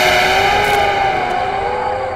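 Eerie horror background score: sliding, wavering tones under a loud rushing whoosh that swells at the start and fades over the first second or so.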